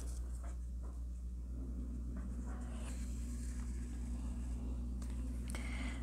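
Faint rustling and scratching of yarn being drawn through crocheted stitches with a needle, with a few soft strokes over a steady low hum.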